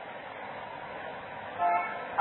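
Steady hiss of an old tape recording in a pause of speech, broken about one and a half seconds in by a short, steady, horn-like tone lasting a few tenths of a second.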